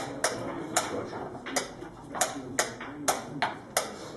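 Wooden chess pieces clacking down on a wooden board and chess-clock buttons being slapped, in a quick alternating blitz rhythm of about two to three sharp knocks a second.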